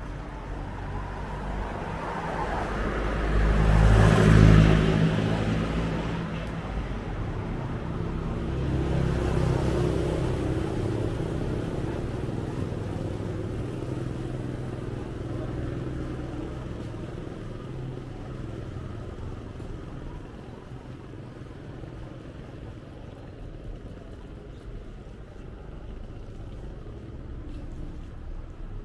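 Street traffic. A motor vehicle passes close, its engine rising and then fading, loudest about four seconds in. A second vehicle passes more quietly around nine to ten seconds, and fainter traffic continues after it.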